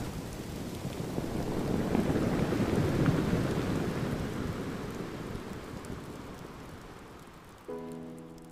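Collapse sound effect of a glacier calving: a long rumbling wash of falling ice and water that swells about three seconds in and slowly dies away.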